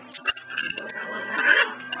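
A Tibetan Terrier puppy vocalizing, building to its loudest about one and a half seconds in, after a few faint clicks.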